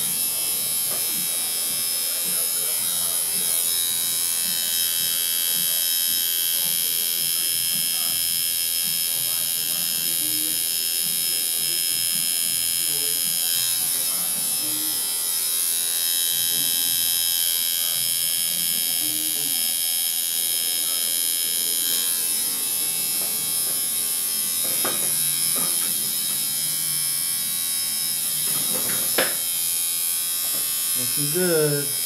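Electric tattoo machine buzzing steadily while lining a tattoo outline, with a sharp click near the end.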